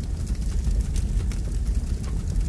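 Deep, steady car engine rumble with a fast, uneven flutter.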